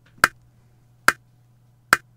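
Software metronome in Cakewalk by BandLab clicking three times, evenly spaced at about 71 beats a minute, as the lead-in before a MIDI piano part is recorded.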